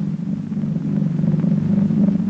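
A steady low-pitched drone on an old cartoon soundtrack, holding level with no clear change.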